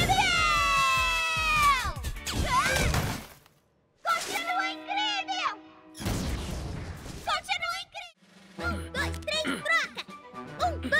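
Cartoon soundtrack: a long falling, voice-like glide over music, then a brief break, then a short musical bridge with a sung-sounding melody and held chords, and background music with a low bass pulse near the end.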